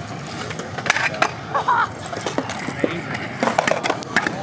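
Pro scooter wheels rolling over a concrete skatepark bowl, a steady rolling noise broken by several sharp clacks of the scooter striking the concrete, with a cluster of them near the end.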